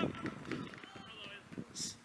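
Footballers calling out to each other over the thuds of running feet on the pitch.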